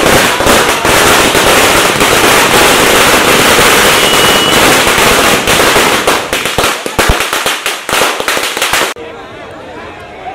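Firecrackers going off in a long, rapid run of loud cracks, thinning out toward the end. The sound cuts off suddenly near the end, leaving crowd voices.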